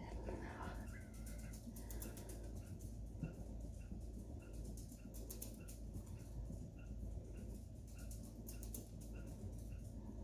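Faint, evenly repeated bird chirps, about two a second, over a steady low background hum.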